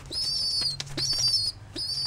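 Young domestic pigeon giving high, slightly wavering squeaks, about three in a row, each about half a second long, with its wings flapping.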